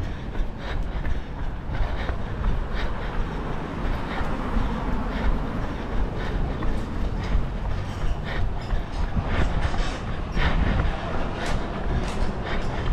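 Running footsteps on pavement, about two to three a second, over a steady low rumble.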